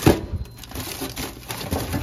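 Frozen food packages being shifted around a freezer drawer by hand: plastic wrappers crinkling and hard frozen packs knocking against each other, with one sharp knock just as it begins.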